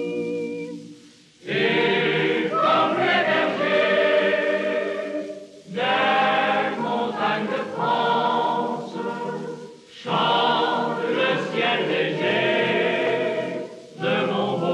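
A men's vocal group and a boys' choir singing together. A held note fades out about a second in, then the singing comes in three phrases of about four seconds each, with short breaks between them.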